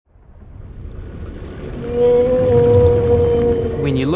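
A low rumble fades in from silence, and about two seconds in a long, steady killer whale call joins it and holds to the end.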